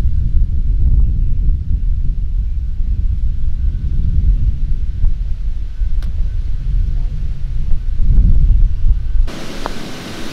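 Wind buffeting the microphone, a loud low rumble throughout, with a single faint click of a putter striking a golf ball about six seconds in. Near the end the rumble cuts off abruptly to a steady hiss.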